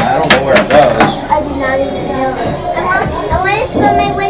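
Children's voices and play-area chatter, with a quick run of sharp clicks and knocks in the first second, like plastic toy tools being rummaged in a plastic toolbox.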